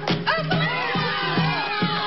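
Live folk dance tune on accordion and hand-held frame drum, the drum striking a little over twice a second under a held accordion note, while a group of performers whoop and shout over the music.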